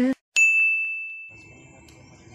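A single bright bell-like ding sound effect, struck once and ringing on as it fades over about a second and a half.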